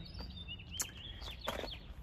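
Small birds chirping in short high calls, over a steady low outdoor rumble, with a couple of faint footsteps or taps about a second in and again a half-second later.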